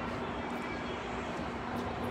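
Steady outdoor background noise: an even rushing sound with a constant low hum running through it, unchanging throughout.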